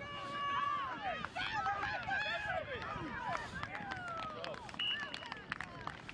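Sideline spectators shouting and cheering with many overlapping, rising and falling voices as a try is scored. Near the end comes a short, high referee's whistle blast, followed by scattered clapping.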